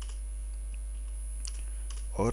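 A few faint keystrokes on a computer keyboard, over a steady low electrical hum.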